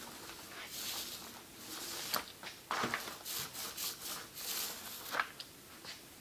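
Small rubber glue roller rolled back and forth over wood veneer, spreading a coat of wood glue: soft, sticky rubbing in short strokes, with a few light knocks.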